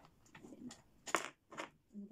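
Handling sounds from a small metal digital safe: a few short rustles and clicks, the sharpest just past a second in.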